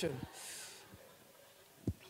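A pause in a man's speech over a handheld microphone: a word trails off, then a short breathy hiss and, near the end, a brief soft thump.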